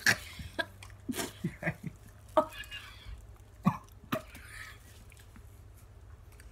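Short coughs, gagging sounds and bursts of laughter from two people, about five sharp outbursts over the first four seconds and quieter after, a reaction to the foul taste of a canned-dog-food flavoured jelly bean.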